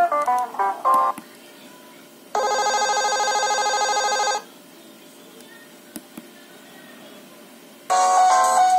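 Nokia 3110 classic's loudspeaker playing ringtone previews. The last notes of one melody end about a second in; then a steady, buzzy electronic ringtone sounds for about two seconds and stops. Two faint clicks follow in the quiet near the end.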